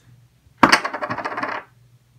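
Poker chips clattering together in one brief, rapid run of clicks that starts sharply about half a second in and lasts about a second.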